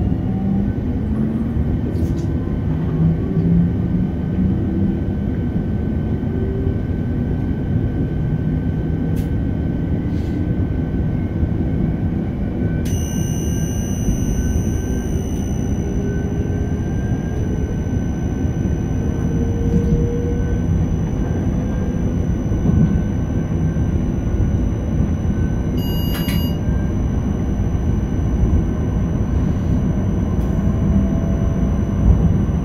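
Škoda Panter electric multiple unit heard from the driver's cab while running: steady wheel and running rumble, with a drive whine rising slowly in pitch as the train gathers speed. A short electronic beep sounds about 26 seconds in.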